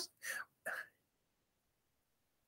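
A man's short breathy chuckle: two quick bursts within the first second.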